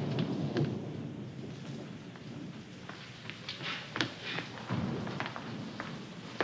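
Storm sound effect: a low rumble of thunder, loudest at the start and fading, over a steady hiss of rain and wind. A few sharp knocks or clicks sound through it, the clearest about four seconds in.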